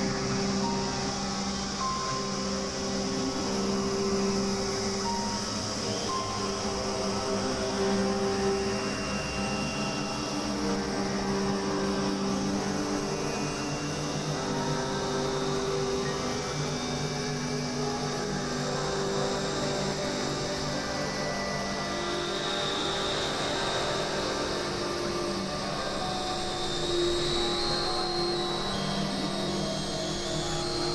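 Experimental electronic drone music: sustained synthesizer tones held for several seconds at a time, shifting slowly from note to note over a steady layer of hiss.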